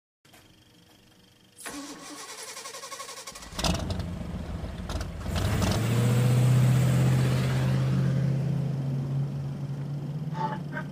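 An engine-like rumble: a hiss about two seconds in, a low rumble that starts a second or so later, then a steady low hum that swells and holds.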